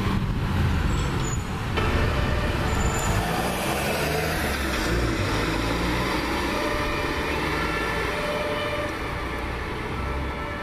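Road vehicle engines: a fire truck's diesel engine running as it drives away, then, after an abrupt change about two seconds in, the engines of cars and a fire truck approaching.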